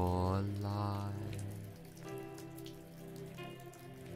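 Recorded rain falling, with scattered drops, under a soft sustained ambient music pad. A drawn-out spoken word fades out in the first second.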